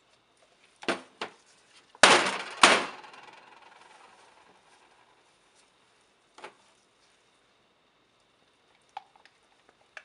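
Plastic pitchers and containers knocked and set down on a metal worktop: a couple of light clunks, then two loud ones about two seconds in that ring on and fade away, and one more a few seconds later.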